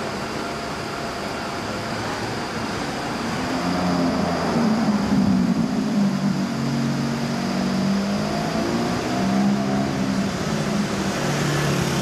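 Busy city traffic with engines running, a car engine getting louder and passing close from about four seconds in, and rising again near the end.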